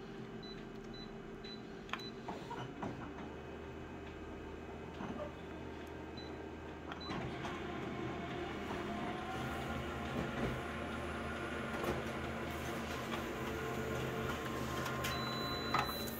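Office colour multifunction copier running a full-colour copy. A few short key beeps and a click come near the start, then the print mechanism's steady whirring builds and grows louder from about halfway through.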